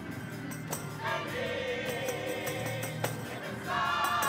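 Gospel music: a choir sings over a two-manual organ's sustained chords, with a few sharp percussion hits. The voices come in about a second in, drop back briefly, and return near the end.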